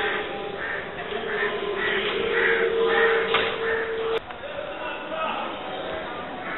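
Crows cawing over a background of indistinct voices, with a steady hum that cuts off suddenly about four seconds in, just after a sharp click.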